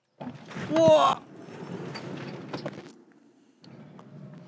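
Tesla Model S Plaid electric car launching hard from a standstill and accelerating away. A loud rush of tyre and road noise peaks about a second in and fades over the next two seconds as it pulls off, with no tyre chirp.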